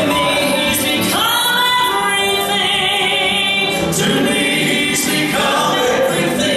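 A gospel vocal trio of two men and a woman singing in harmony through handheld microphones, holding long notes that change every second or so.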